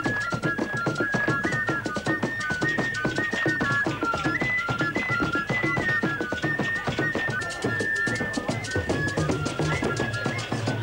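Ghanaian drum ensemble playing a fast, dense interlocking rhythm, with a high piping melody of short held notes stepping between a few pitches over the drums. The music starts abruptly at the beginning.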